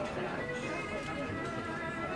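Background music with held notes playing in a coffee shop, over the indistinct voices of people talking.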